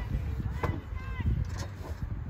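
Distant raised voices from people at an outdoor football field, a few short shouts over a low, uneven rumble.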